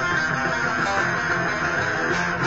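Fender Stratocaster electric guitar playing a rock-blues jam, a steady dense stream of notes and chords.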